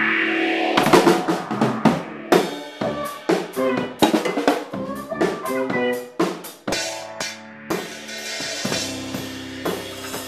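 Drum kit being played: snare, toms, kick and cymbals struck in an irregular pattern, with a hard hit coming in about a second in. Sustained pitched notes run underneath.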